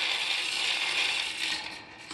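3D-printed bullet feeder running: 9mm bullets rattling and clinking against each other and the plastic bowl as the rotating collator plate stirs them around, a steady dense clatter that eases slightly near the end.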